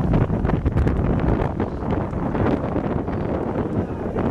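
Wind buffeting the microphone: a loud, rough, continuous rumble with irregular crackles through it.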